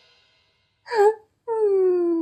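Cartoon character's voice: a short vocal sound about a second in, then a long drawn-out note that slides slowly down in pitch.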